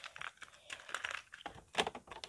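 Irregular clicks and taps of hands fiddling with a small plastic radio, pressing its buttons and handling the case.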